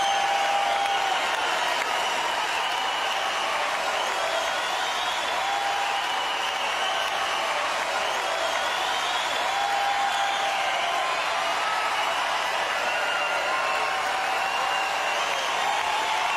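Large arena crowd cheering and applauding steadily, with single shouts and whistles rising above the roar now and then.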